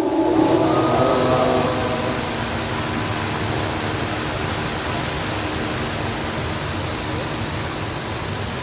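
A held, wavering note of melodic Qur'an recitation fades out about a second and a half in. It is followed by a steady background noise with no clear pitch.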